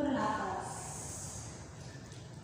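A person's voice: a short voiced sound falling in pitch, then about a second of breathy hiss, like a slow exhale.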